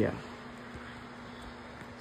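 A steady buzzing hum at one unchanging pitch, following a single spoken word at the start.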